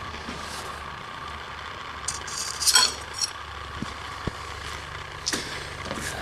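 Steady low machine hum with a faint steady tone, broken about two to three seconds in by a few light metallic clinks of the steel knife blank being lifted off the surface grinder's magnetic chuck, with a couple of small ticks later.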